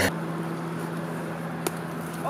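A vehicle engine humming steadily, with a single sharp click about one and a half seconds in.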